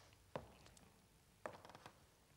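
Two footsteps on a stage floor: sharp knocks about a second apart in near silence.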